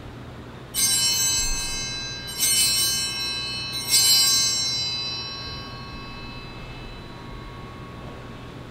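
Altar bells rung three times at the elevation of the chalice, marking the consecration of the wine. The three bright, metallic rings come about a second and a half apart, and the last fades slowly.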